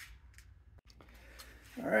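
Quiet garage room tone with a few faint clicks early on and a brief drop to silence a little before one second in; a man starts talking near the end.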